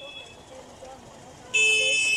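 Faint street background noise, then a vehicle horn about one and a half seconds in: one loud, steady honk that runs on past the end.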